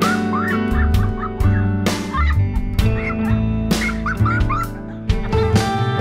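Background music with long held notes and a heavy hit about every two seconds. Short high calls, like bird cries, sound repeatedly over it.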